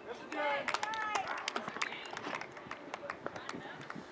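Several people shouting and calling out in high, excited voices, loudest in the first second, with a few sharp knocks scattered through.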